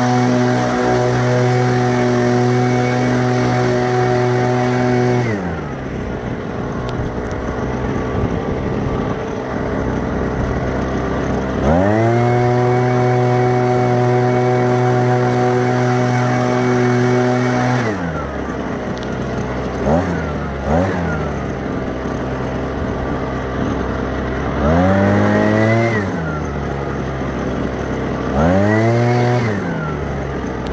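Small petrol engine, most likely a handheld leaf blower, held at full throttle for about five seconds and then dropping to idle. It revs up again and holds for about six seconds, then gives a few short throttle blips and bursts near the end.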